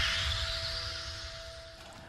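Title-card sound effect: a whooshing sweep over a low rumble and a steady held tone, fading out gradually.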